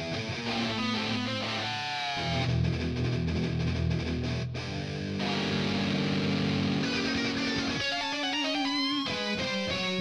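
Electric guitar shredding in a heavy-metal style: fast lead runs with bent notes at first, then heavy low chords held from about two seconds in, and quick high runs again near the end.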